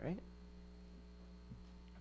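Steady electrical mains hum on the sound system, with a brief voice sound right at the start and a faint knock about one and a half seconds in.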